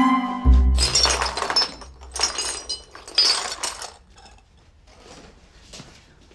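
Crockery crashing and breaking: a sudden loud crash with a deep thud about half a second in, then two more bursts of clinking and clattering, dying away about four seconds in. The scene points to a bowl of herbal medicine going over.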